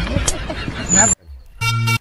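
Rumbling noise with a man's voice, then a short horn-like toot near the end: one steady pitched tone of under half a second that cuts off suddenly.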